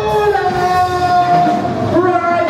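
Live reggae band music with long held notes sounding together over the beat.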